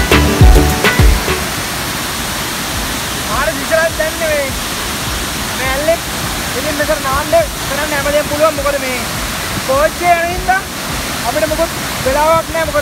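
Steady rush of a large waterfall throughout, with a man's voice talking over it from about three seconds in; a music track ends in the first second or so.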